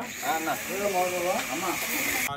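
People talking, more than one voice at once, over a steady hiss.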